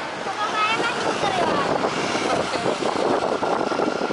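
Steady, loud rushing noise of jet airliner engines heard from beside the runway, with wind on the microphone. A few short chirps sound in the first two seconds.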